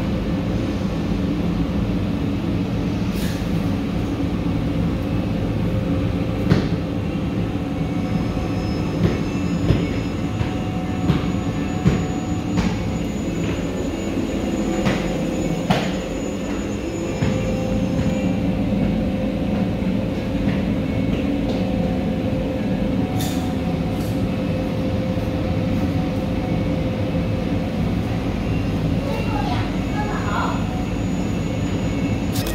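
Steady mechanical hum with several held low tones inside an enclosed Ferris wheel gondola, with a few sharp clicks and knocks in the middle stretch.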